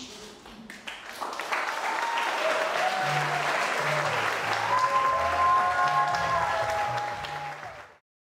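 Audience applause breaking out about a second in after a sung ending, with a short piece of music and a bass line joining over it. Both fade out near the end.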